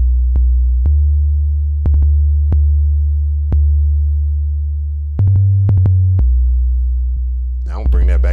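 Synthesized 808 bass from the MPC One's Drum Synth plugin, played as a series of deep, long-decaying booms at several different pitches, each note starting with a short click.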